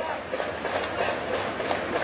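Baseball stadium crowd noise in a domed ballpark: dense, steady clapping and cheering with faint regular beats about three a second.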